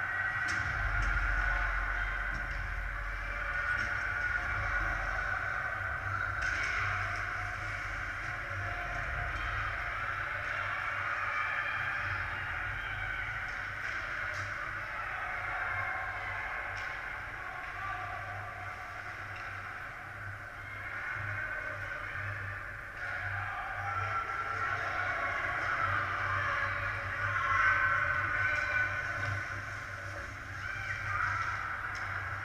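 Ice hockey rink ambience during play: a steady wash of distant skating and arena noise with a few faint knocks.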